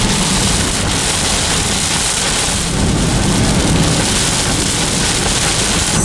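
Heavy rain pelting a car's windshield and roof, heard from inside the cabin as a loud, steady wash of noise.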